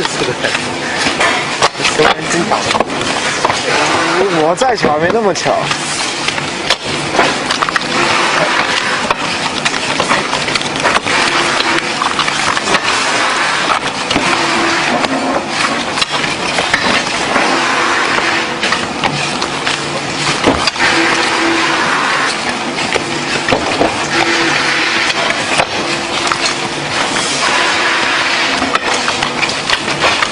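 Indistinct voices talking over a continuous loud background din of a busy workroom, with a faint steady tone coming and going in the second half.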